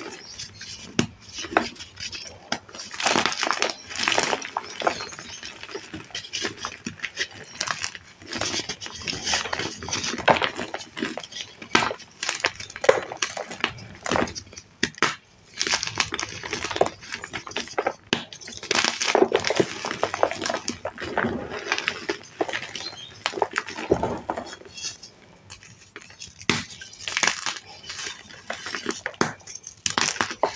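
Dyed, reformed gym chalk blocks being crushed and crumbled by hand, with dense irregular crunching and crackling as the chalk snaps and its crumbs fall onto a pile of broken chalk.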